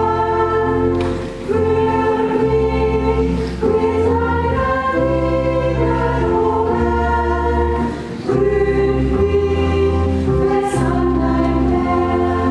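Church choir singing a hymn in sustained chords that change every second or so, over held low bass notes, with brief breaks between phrases.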